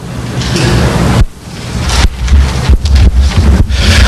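Microphone handling noise: a loud low rumble with rustling, dipping briefly about a second in.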